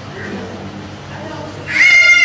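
A child's loud, high-pitched scream starts suddenly near the end, as the swing tips over and the child falls. Before it there is only a low background voice.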